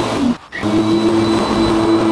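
Lawnmower running with a steady whine as it cuts grass; about a third of a second in the sound dips in pitch and drops out briefly, then carries on at the same pitch.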